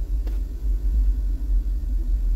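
A steady low rumble inside an SUV's cabin, with no music playing.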